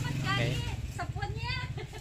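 People's voices talking, with a low, steady mechanical hum underneath that fades away less than a second in.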